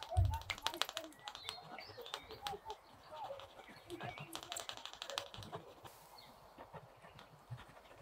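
Rotring Tikky mechanical pencil lead scratching on Bristol board in short, quick shading strokes, heard as clusters of fine ticks and scratches, busiest about a second in and again around four to five seconds. A soft low thump at the very start.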